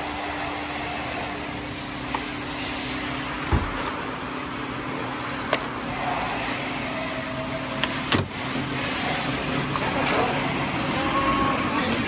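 A few sharp clicks and knocks from a car's interior door trim panel as it is worked loose by hand, over a steady workshop hum.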